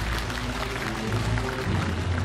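Background music with held low notes, over studio audience applause.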